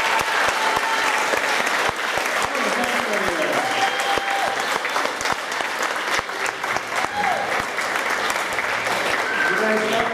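Audience applauding, a dense steady patter of many hands clapping, with voices calling out over it now and then.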